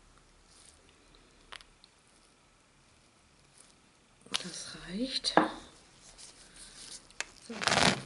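A short scraping noise near the end: a scraper drawn across a metal nail-stamping plate to wipe off the excess glue. Before it there is a single faint tap.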